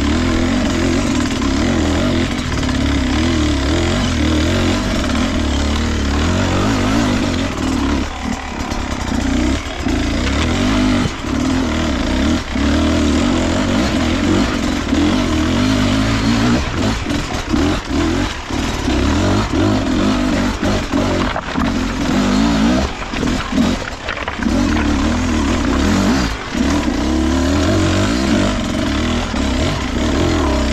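Beta RR 250 Racing two-stroke enduro engine, fitted with an S3 high-compression head, running under load as the bike climbs, with the throttle repeatedly shut off briefly and opened again through the middle of the stretch.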